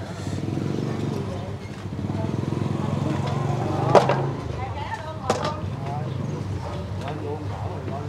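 A motorbike engine running close by with a steady low hum that drops away about four and a half seconds in, with a sharp knock just before it drops and another about a second later, over faint background voices.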